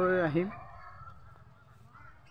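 A person's voice, held and bending in pitch, ending about half a second in, then faint background noise.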